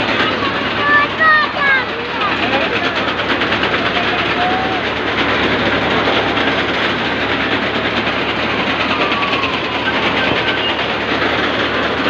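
Fairground jumping ride running with a steady, fast metallic rattle and clatter. A few high shouts sound over it, mostly in the first two seconds.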